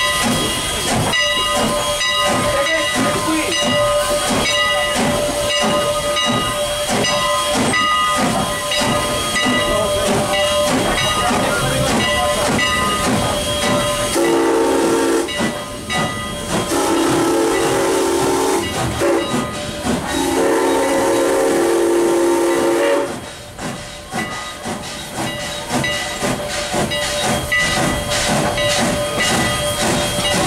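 Steam locomotive Canadian National 89 hissing steam as it moves, then its chime whistle sounding three long blasts about halfway through, before the hiss carries on.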